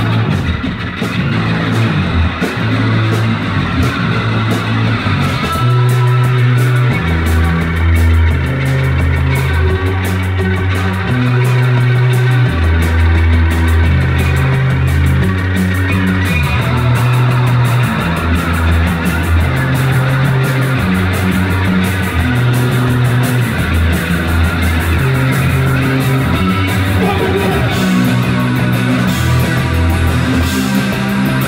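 Live punk rock band playing an instrumental passage: electric guitar, a bass guitar riff moving through repeating low notes, and drums with steady cymbal hits.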